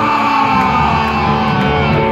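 Live punk rock band playing loud: electric guitar ringing out with sustained notes and sliding pitches, and bass coming in about half a second in.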